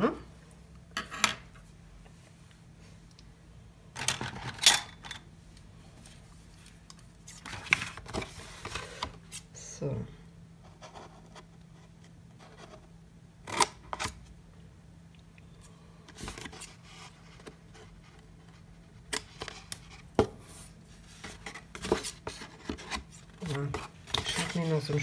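Scissors snipping into coloured cardstock in a series of short, separate cuts with pauses between them.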